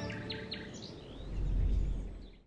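Short bird chirps in the first second as an intro jingle ends, then a low rumble that swells and cuts off abruptly.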